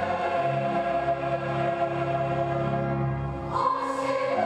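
Choral music: a choir singing slow, sustained chords, moving to a new chord about three and a half seconds in.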